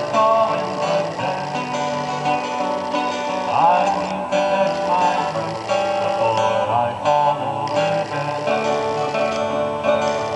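Live acoustic folk music from a trio: acoustic guitar and ukulele strumming, with a second small stringed instrument, playing a passage between sung lines. There are a few pitch glides, around four and seven seconds in.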